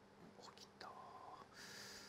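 Near silence with a few quiet, low spoken words and faint clicks of plastic mahjong tiles being handled about half a second in.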